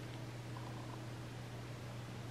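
Steady low hum under an even soft hiss, with no distinct strokes or knocks.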